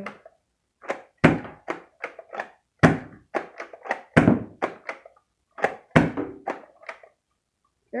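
Stock Eon Pro foam dart blaster being primed and fired repeatedly: a series of sharp plastic clacks and thunks, the four loudest about a second and a half apart with lighter clicks between them.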